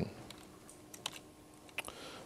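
A few faint, sharp clicks of laptop keys being pressed, about one second in and again near the end, over a faint steady room hum: the presenter advancing the lecture slides.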